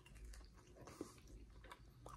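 Faint chewing of a soft baked pretzel bite filled with pepper jack cheese, with a few small mouth clicks, one about a second in.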